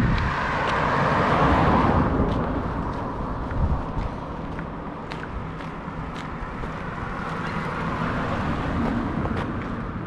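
A car drives past, its tyre and engine noise swelling and fading over the first two seconds, followed by steady traffic noise as another car approaches.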